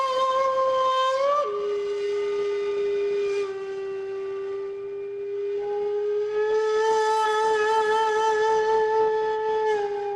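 Background music: a solo breathy flute playing long held notes. The pitch drops about a second and a half in and rises again around six seconds, with a slight waver.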